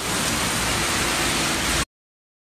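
Heavy rain falling steadily, a dense even hiss that cuts off suddenly shortly before the end.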